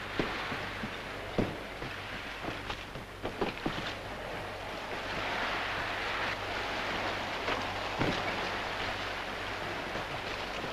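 Choppy sea washing and splashing against a boat and hull, a steady rushing that swells about halfway through, with a few sharp knocks scattered through it.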